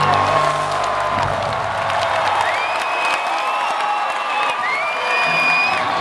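The rock band's last notes, a sustained bass chord, ring out and stop about a second in. Then a concert crowd cheers and claps, with two long whistles rising out of it.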